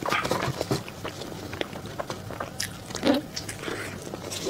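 Close-miked chewing of soft chocolate roll cake with cream filling: wet mouth clicks and smacks throughout, with a louder, lower sound about three seconds in.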